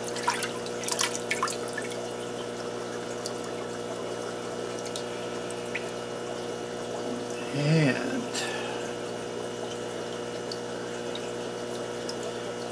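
Water sloshing and splashing as a fish net is swept through a half-filled aquarium in the first second or two, then a few scattered drips as the net is lifted out. A steady electrical hum runs underneath, and there is a short vocal murmur about eight seconds in.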